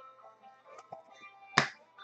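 Faint background music, with one sharp click about one and a half seconds in as a hard plastic card holder is set down on the tabletop.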